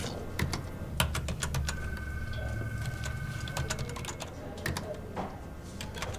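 Typing on a computer keyboard: irregular key clicks over a low hum, with a faint steady tone for about two seconds in the middle.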